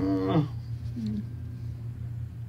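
A man's voice imitating a sheep's bleat, one wavering "maa" in the first half second, then a short low note about a second in, over a steady low hum.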